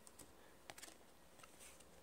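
Near silence with a few faint soft clicks, clustered a little under a second in, from trading cards being handled and turned over in the fingers.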